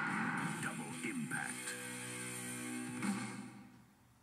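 Closing music of a movie trailer: a held dramatic chord, a sharp hit about three seconds in, then the sound fades away to near silence.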